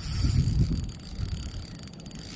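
Low, uneven mechanical rattling and rumbling.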